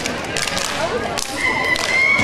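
Step team stomping and clapping, a run of sharp, crisp hits struck by many performers together. A high steady tone joins in about one and a half seconds in.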